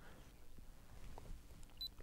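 Quiet outdoor background with faint handling sounds of a handheld camera: a small click about a second in and a brief high beep near the end.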